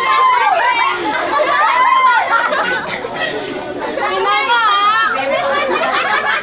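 A group of children and young people talking and shouting excitedly over one another, their voices high-pitched. A high, wavering voice stands out from about four seconds in.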